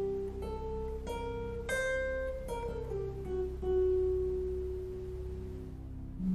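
Archtop guitar playing a single-note line from the C auxiliary diminished blues scale (an eight-note scale). The line climbs note by note to its highest note about two seconds in, then steps back down and ends on a long ringing note.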